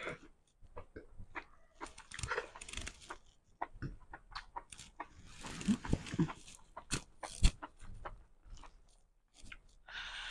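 Close eating sounds from a person eating by hand: slurping a strand of food, wet chewing and lip smacks. Short sharp clicks are scattered through, the loudest about seven and a half seconds in.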